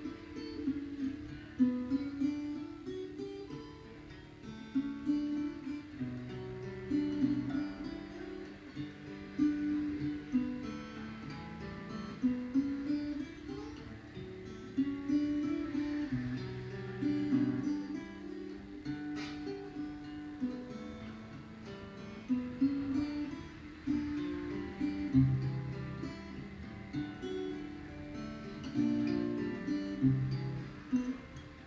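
Solo fingerstyle playing on a small acoustic guitar: a plucked melody over bass notes, in a steady flow of notes.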